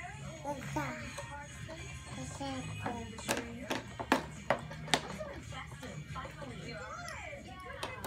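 Electronic tune playing from a baby activity center, mixed with baby babbling. Between about 3 and 5 seconds in come about five sharp slaps on its plastic tray.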